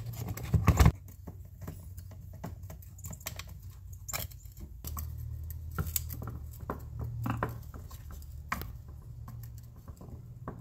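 Parts of a chainsaw housing clattering as they are fitted together, then small clicks and scrapes of a screwdriver turning a screw into the case.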